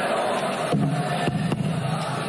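Live band on stage over crowd noise: just under a second in, a sustained low note comes in with a few sharp percussive clicks.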